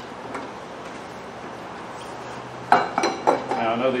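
Metal clinks and knocks as a long axle bolt is fed through a zero-turn mower's front caster wheel and fork, a few sharp strikes coming near the end.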